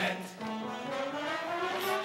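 Brass in the jazz accompaniment playing a held chord whose pitch rises steadily across the two seconds, a swell between the choir's sung lines.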